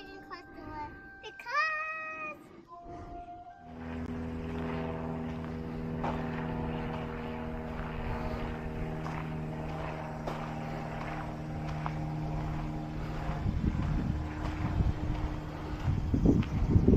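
A child's voice briefly, then from about four seconds in a steady motor hum with several held tones that runs on without change.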